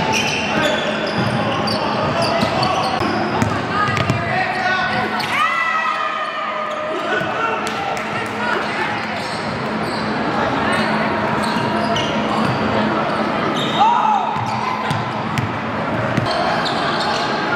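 Live sound of a basketball game on a hardwood gym floor: the ball bouncing as it is dribbled, with players' voices calling out and a few short sneaker squeaks.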